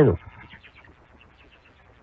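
A man's voice on a talk-radio recording trails off on the first fraction of a second, then a pause that holds only a faint, even hiss.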